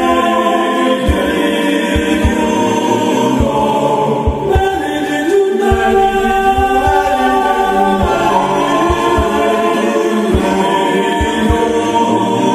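Choir music in the Gregorian style: a choir holds sung chords, joined by short low thumps from a drum.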